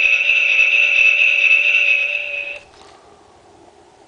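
A steady, unchanging electronic tone from the talking snowman countdown toy's sound chip. It holds for about two and a half seconds, then cuts off suddenly.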